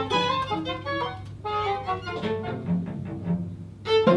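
Live chamber music on bowed strings, with viola and cello prominent, playing a quick passage of short, separate notes. The sound drops away briefly just before the end.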